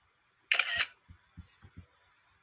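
Camera-shutter click of a screenshot being taken to save the comment on screen: one short, sharp burst about half a second in, followed by a few soft low thumps.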